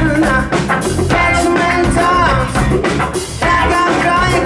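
Live band playing funk-rock: electric guitars over bass and drum kit.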